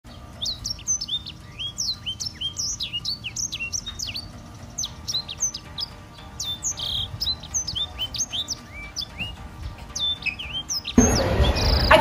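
Birds chirping: a busy run of short, quick chirps, many sweeping down in pitch, several a second. About eleven seconds in they give way to louder outdoor background noise.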